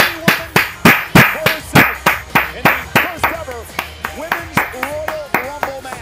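One person clapping their hands steadily, about three claps a second. The claps grow quieter in the second half.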